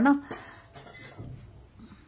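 A few faint, light clinks and knocks of crockery and cutlery, scattered and irregular.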